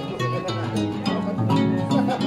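Live band music led by a harp, its low bass notes stepping along steadily under plucked and held melody notes.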